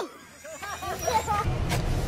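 Faint voices and laughter, then a low, steady vehicle rumble that comes in about three-quarters of a second before the end.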